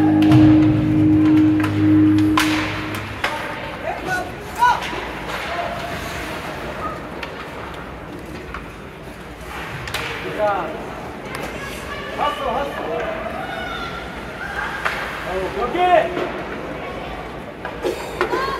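Ice rink during a youth hockey game: music over the rink sound system plays for the first few seconds and stops, then shouts from players and spectators and sharp clacks of sticks and puck echo through the arena.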